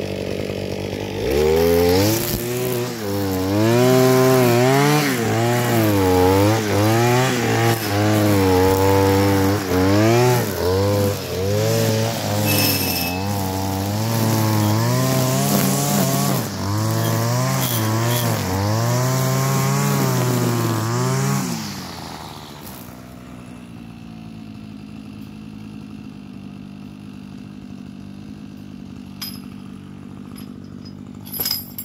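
Petrol string trimmer (whipper snipper) idling, then opened up about a second in. Its engine pitch rises and falls over and over as the line cuts grass. About twenty seconds later it drops back to a low idle, with a couple of clicks near the end.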